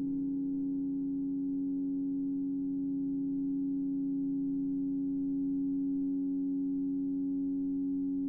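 Grand piano string driven by an EBow, sounding a steady drone with a few overtones that holds without any decay.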